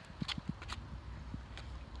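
A few faint, irregular footsteps on pavement over a low steady rumble.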